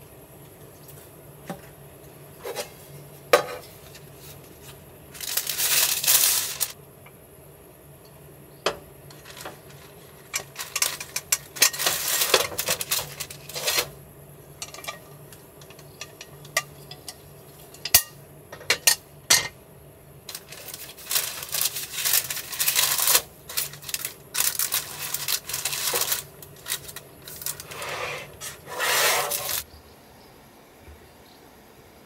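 Kitchen handling at a table: sharp metallic clinks and clacks from a stovetop hot sandwich maker and a knife, with repeated bursts of paper rustling as a grilled sandwich is laid on and handled in paper.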